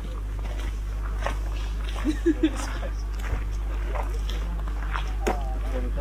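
Nearby people's voices in low outdoor chatter, with three short voice sounds about two seconds in, over a steady low rumble.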